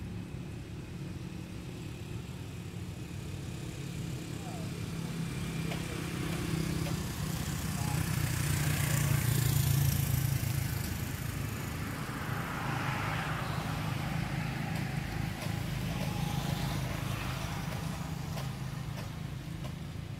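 Low engine hum of a passing motor vehicle, growing louder to a peak about halfway through and then easing off.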